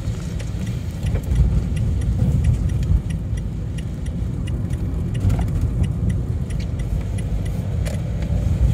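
Inside the cab of a Renault Kangoo van driving on wet roads: a steady low rumble of engine and tyres, with small rattling clicks throughout.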